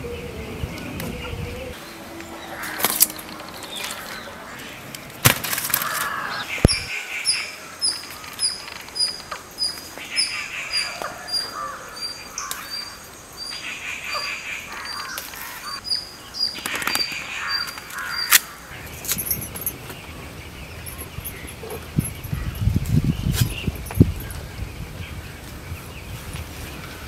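A bird repeating short high chirps, about two a second, for roughly ten seconds, over the rustle of leaves and a few sharp snaps as leaves are plucked by hand from a shrub and a tree. A low rumble comes near the end.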